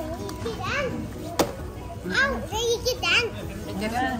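Children's high voices chattering and calling out, with a sharp click about a second and a half in, over a steady low hum.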